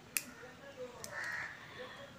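A crow cawing faintly once, a little past the middle, over a quiet kitchen background. Near the start there is a single sharp tap of the spatula against the kadai.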